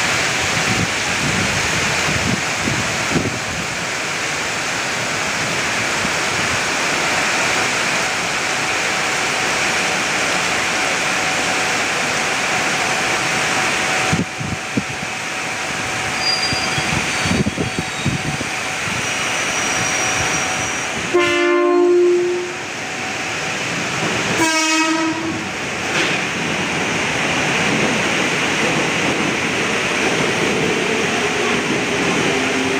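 KRL electric commuter train running through the station in heavy rain, under a steady hiss of rain and running noise. About two-thirds of the way in, the train horn sounds one long blast, then a shorter second blast about three seconds later.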